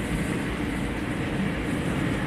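Steady engine and road noise heard from inside a moving car's cabin.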